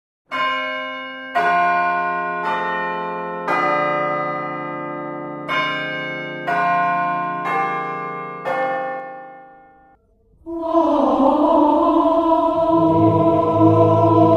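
Church bells of differing pitch struck one after another, about a second apart, each ringing out and fading, eight strikes in all. After a short pause about ten seconds in, sustained choral music begins.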